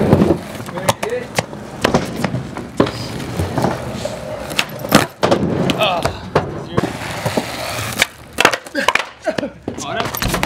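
Cheap Walmart skateboard rolling on rough concrete, with a run of sharp clacks from the deck and wheels striking the ground as tricks are tried and the board clatters away.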